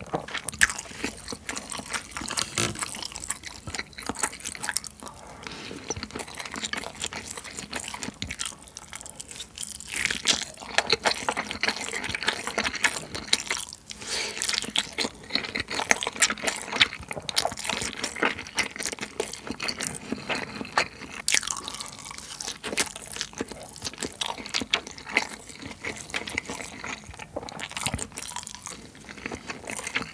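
Close-miked wet chewing of a mouthful of rice and fried Spam: sticky mouth clicks, squelches and smacks in a dense, irregular run, with no pause.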